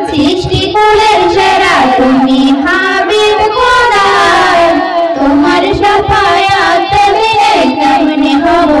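Two girls singing a Bengali Islamic devotional song together into handheld microphones, their amplified voices holding long, sliding melodic lines.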